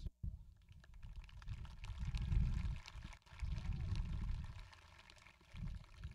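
Wind buffeting an outdoor microphone: a low, uneven rumble that comes and goes in gusts, with faint ticks above it.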